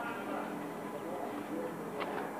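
Indistinct background chatter of several people talking, over a steady outdoor murmur.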